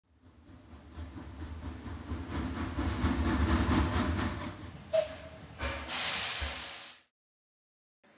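Train sound effect: a train running, growing louder with a rhythmic low beat, a brief high tone about five seconds in, then a loud hiss that dies away about a second before the end.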